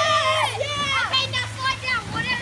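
Children shrieking and yelling excitedly in high voices, overlapping one another.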